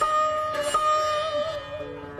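Sitar being played: two plucked strokes, each note held and ringing, the pitch bending slightly before it drops to a lower note near the end.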